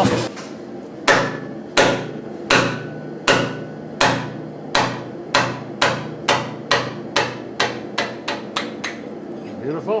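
Hand hammer knocking the steel wedge key out of the bottom die seat of a Say-Mak power hammer, steel striking steel. The blows start about a second in, slow at first, then come faster, two or three a second, as the key loosens.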